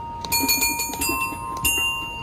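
Bell-like chime tones from an interactive musical floor installation, each struck as a foot presses a floor plate: three notes about two-thirds of a second apart, each ringing on over a steady held tone, played as someone tries to pick out a tune.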